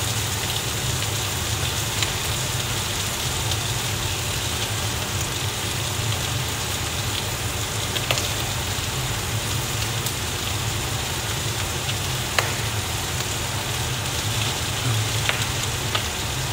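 Bacon and vegetables sizzling in a frying pan as yakisoba noodles are dropped in by hand: a steady frying hiss with a few sharp crackles and a low steady hum underneath.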